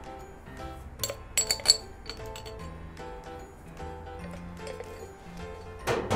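A few sharp clinks on a stainless steel mixing bowl about a second in, as dried oregano is added, over steady background music.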